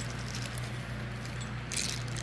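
Plastic parts bag of metal hinges being handled: a brief crinkle and jingle near the end, over a steady low hum.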